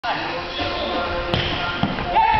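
A futsal ball striking, a single sharp thud about two-thirds of the way in, against the players' voices in the hall.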